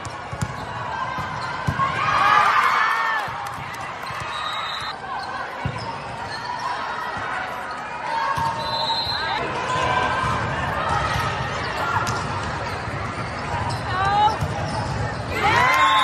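Indoor volleyball rally: sharp ball contacts and sneaker squeaks on the sport court, several squeaks bunched about two seconds in and again near the end, over players calling and spectators talking in a large, echoing hall.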